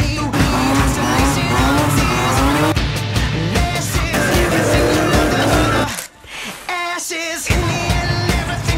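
Drift car engine revving hard with a wavering pitch and tyres squealing as it slides, mixed over rock music with a steady beat. Everything drops out briefly about six seconds in before the music carries on.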